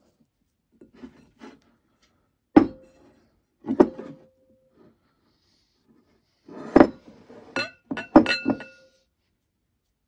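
Glass mixing bowl knocked and clinking while bread dough is stretched and folded in it, several knocks ringing briefly. About eight knocks come irregularly, the loudest about two and a half seconds in and a quick run of them between about seven and nine seconds.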